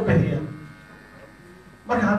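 A man speaking: a short phrase, then a pause of over a second, then speech resumes near the end. A steady electrical buzz runs underneath and is plain in the pause.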